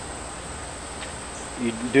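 Crickets trilling steadily at a high pitch.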